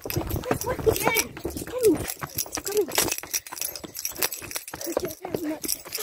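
Running footsteps on paving slabs, heard as rapid uneven knocks, mixed with bumping and rubbing of the phone's microphone and a few short wordless vocal sounds.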